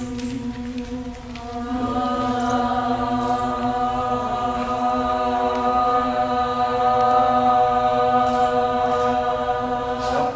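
A group of voices chanting one long, steady drone in unison. More voices come in at higher pitches about two seconds in, and the sound swells a little louder toward the end.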